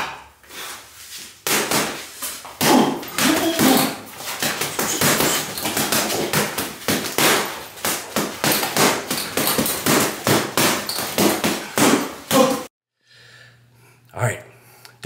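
Boxing gloves hitting an Everlast heavy bag in a fast, continuous flurry of punches, several sharp thuds a second. The punching stops abruptly near the end.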